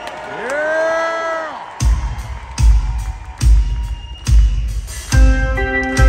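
Metal band starting a song live through a concert PA. After one long shouted call, heavy drum and bass hits land about every 0.8 seconds, and sustained guitar notes join near the end.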